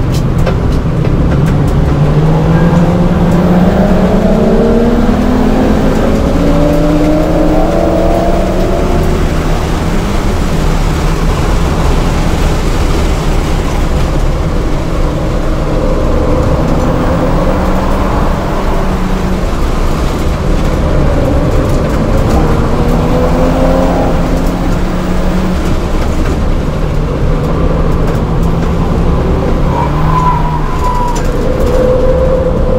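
In-cabin sound of a 2007 VW GTI's turbocharged 2.0-litre four-cylinder being driven hard at track pace. The engine note climbs steadily through the first several seconds, holds, climbs again around twenty seconds in, then drops away as the car slows for a corner, over constant tyre and wind noise.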